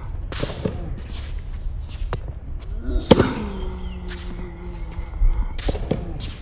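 Tennis practice on a hard court: sharp pops of a tennis ball being struck and short scuffs of shoes on the court surface at irregular intervals, the loudest hit about three seconds in.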